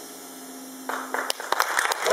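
A band's final held note dies away, and about a second in an audience starts applauding, the clapping quickly growing.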